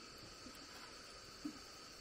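Near-quiet outdoor background with a faint steady high hum, and a few soft low taps, the clearest about one and a half seconds in.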